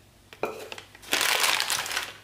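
Thin plastic disposable piping bag crinkling as it is handled and fitted over a tall cup: a light tap or two about half a second in, then a loud burst of crinkling over the last second.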